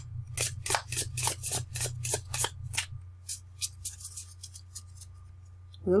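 A deck of tarot cards being shuffled overhand in the hands: a quick run of crisp card snaps, about five a second, that thins out after about three seconds and stops about four and a half seconds in.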